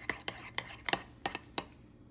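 A metal fork stirring thick berry oatmeal in a ceramic bowl, clinking against the bowl in several sharp, irregular clicks.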